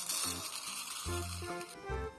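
Dry rice grains pouring from a glass jar into a plastic funnel, a steady rushing hiss that stops shortly before the end. Background music plays throughout.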